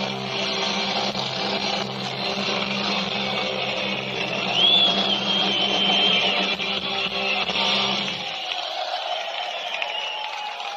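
Live rock band with electric guitars and bass holding a final chord in a loud wash of sound, with a high whistling tone for about two seconds midway. The bass and low notes stop about eight seconds in, leaving the noisy high wash.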